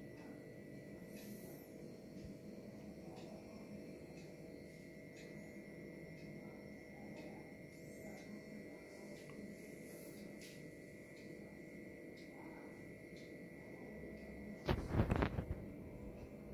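Quiet room tone with a steady electrical hum of several fixed tones and a few faint ticks. Near the end comes one brief, louder low rumble, handling noise from the camera being moved in close along the model.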